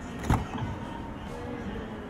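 Rear side door of a 2021 Toyota 4Runner being unlatched and pulled open by its outside handle: one sharp click of the latch about a third of a second in, then the door swinging open.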